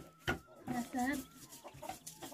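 A hen clucking about halfway through, a short call followed by a longer arching one. A single knock comes just after the start.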